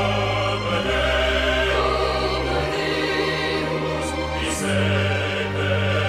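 Choral and orchestral music: a choir sings over sustained bass notes that change every second or two.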